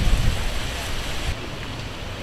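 Wind buffeting an outdoor microphone: an uneven low gusting noise that cuts off suddenly partway through, leaving a quieter steady hiss.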